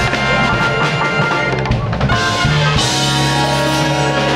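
Live jazz band playing: upright bass, keyboards and drum kit with cymbals, with long low notes held through the second half.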